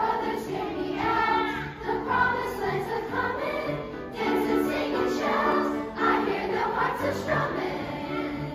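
Children's choir singing with grand piano accompaniment. The voices come in together at the start, over a repeated piano figure.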